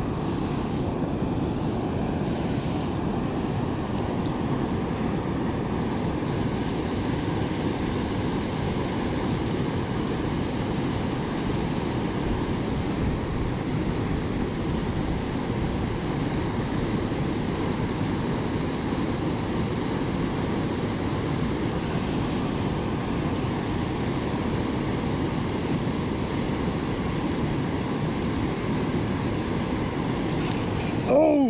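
Water pouring over a river dam spillway: a steady, unbroken rushing noise.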